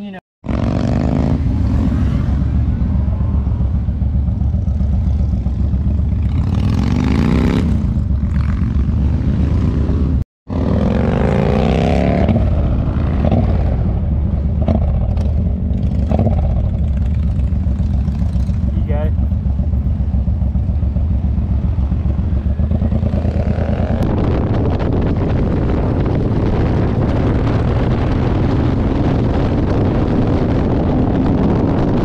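Cruiser motorcycle engine running under way, heard from on the bike, its pitch rising and falling a few times as it pulls. The sound cuts out for a moment about ten seconds in, and wind noise on the microphone grows heavier over the last several seconds.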